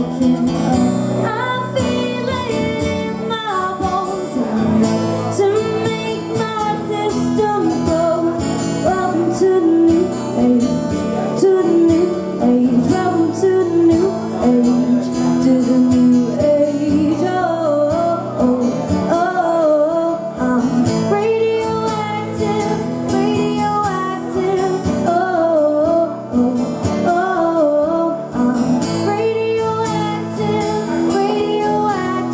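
A woman singing a song live, accompanied by a strummed acoustic guitar.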